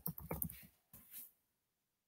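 A few faint keyboard taps and mouse clicks in quick succession in the first second, as a letter is typed into a computer's search box.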